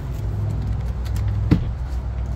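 A steady low mechanical hum with a single sharp click about a second and a half in.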